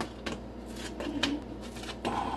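A few light, irregular scrapes and clicks of a sugar cookie being handled and slid across a metal baking sheet.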